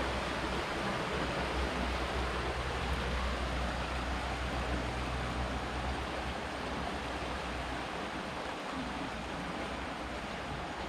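Steady rush of a fast-flowing river, with a low rumble underneath that fades out about six seconds in.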